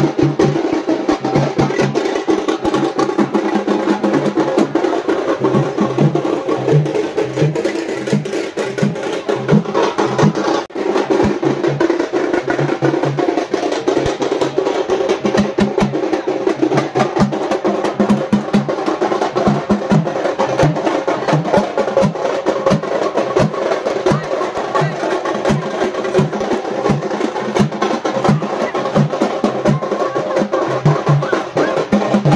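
Tamil parai (thappu) frame drums beaten with sticks in a fast, driving dance rhythm that goes on without a break.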